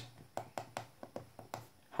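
Left and right hardware buttons of the Chuwi Vi10 keyboard dock's touchpad being pressed: a string of faint, short clicks.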